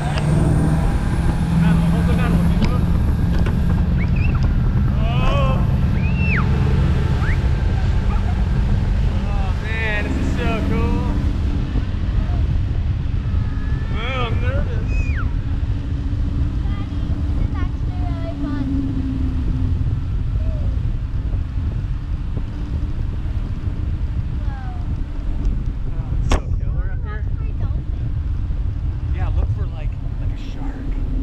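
Steady rumble of wind and a tow boat's engine on a parasail camera's microphone as the riders rise behind the boat, with a few short wavering voice sounds now and then.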